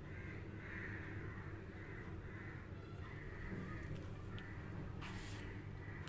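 A bird calling faintly and repeatedly, a short call every half second or so, over a low steady hum, with a brief noise about five seconds in.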